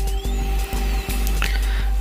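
Background music with steady held notes and thin high tones sweeping up and down.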